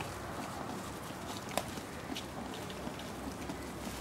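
Moose calves browsing on cut birch branches: leaves rustling and small crackling clicks as they pull off and chew the leaves, with one sharper click about a second and a half in.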